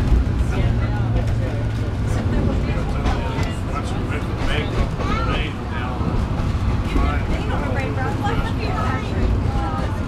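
Vintage rail motor car running along the track: a steady low engine drone with wheel-on-rail noise.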